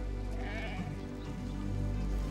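Background music with steady low notes, and a bleat from a flock of sheep and goats about half a second in.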